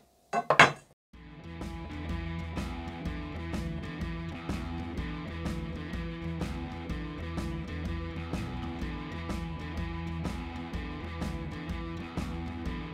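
A brief metallic clink as a metal bracket is set against an aluminium extrusion, then background music with guitar and a steady beat starting about a second in.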